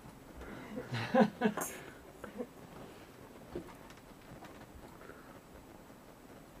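A brief, indistinct human voice about a second in, loudest at the start, then a quiet room with a few faint clicks.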